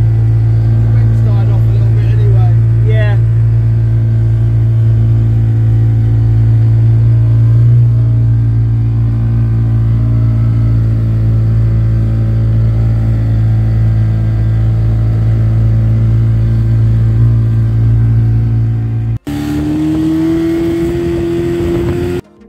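Mariner two-stroke outboard motor running steadily at speed, with the rush of water and wind from the boat. About nineteen seconds in, the sound cuts to an outboard towing, its pitch rising slowly.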